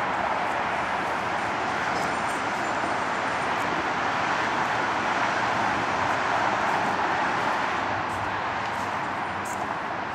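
A steady, even rushing noise with no distinct events, like continuous background roar or hiss.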